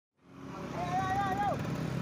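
Road traffic running steadily past, with a person's raised voice calling out once, about a second in.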